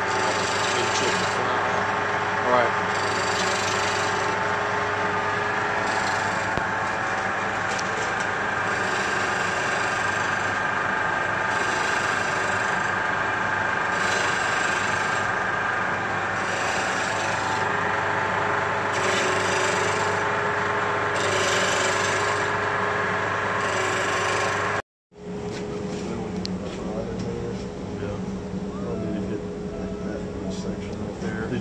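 Wood lathe running while a turning tool cuts a spinning wooden spindle for a mallet: a steady motor hum under a rasping cutting noise that swells and fades every second or two. The sound cuts off abruptly about 25 seconds in and comes back as a quieter steady hum.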